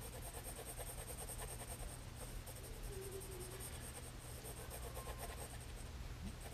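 Faint pencil on sketchbook paper: a graphite pencil shading in light, repeated strokes, held far from the tip so that the side of the lead rather than the point lays down the tone.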